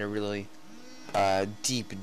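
A man's voice making drawn-out hesitation sounds and short mumbled syllables, with a faint steady hum underneath.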